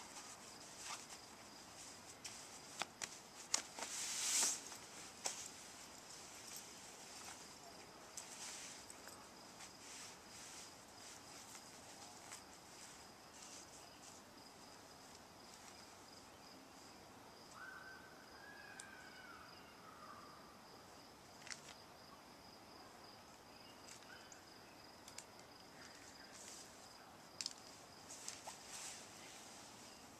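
Nylon sleeping bag rustling as it is pulled from its stuff sack and spread out on grass, in scattered short rustles and clicks, loudest about four seconds in. Under it runs a steady high insect-like whine, with a brief chirp about halfway through.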